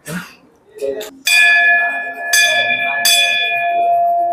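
Hanging brass temple bell struck three times in under two seconds, the ringing of each strike carrying on under the next and sustaining after the last.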